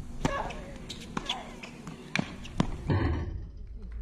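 Tennis rally: sharp hits of the racket on the ball, about a second apart, with short grunts from a player on her shots.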